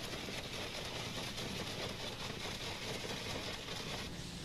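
Hydro-demolition unit running steadily: the noise of its high-pressure water jet blasting the concrete deck, over a low machine hum.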